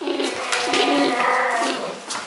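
Brown bear cubs giving low, cooing whines, several calls overlapping and fading near the end.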